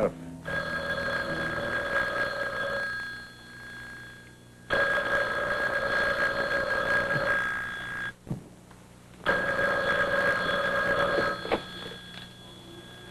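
Telephone ringing three times, each ring long with a short pause between.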